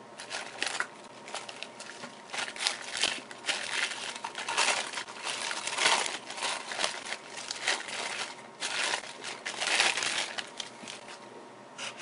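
Clear plastic zip bag crinkling in irregular bursts as it is worked open by hand, dying down near the end.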